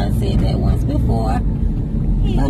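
Steady low rumble of a car being driven, heard from inside the cabin, with a voice talking over it for the first second and a half.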